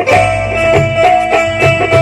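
Live Odia folk devotional music: a held, wavering melody note over a steady drum beat.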